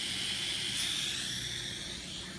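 Steady hiss from an endoscope's air/water channel as the blue air/water button sprays from the tip held out of the water. It eases off shortly before the end.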